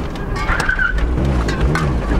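Mazda Miata's four-cylinder engine heard from inside the cabin, running rough in first gear with its revs surging up and down as it struggles to stay running. The driver blames poor fuel injectors.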